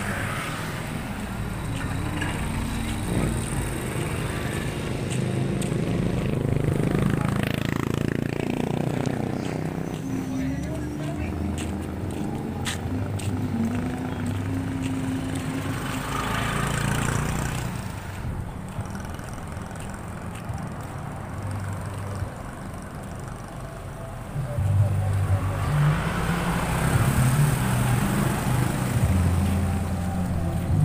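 Night road traffic: cars and motorcycles going by close at hand, each passing swelling and fading, over a steady low hum of engines, with voices in the background.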